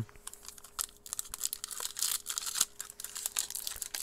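Foil trading-card pack wrapper being torn open and crinkled by hand, a dense run of crackles from about a second in.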